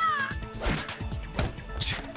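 Anime episode soundtrack: background music with a high-pitched, drawn-out vocal sound that falls and ends just after the start. Three sharp hits follow, over the music.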